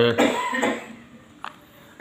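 A person coughs once, briefly, just after finishing a spoken word. A single sharp click follows a little after halfway.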